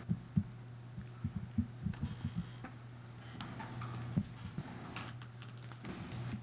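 Irregular light clicks and soft knocks of small desk noises, over a steady low hum.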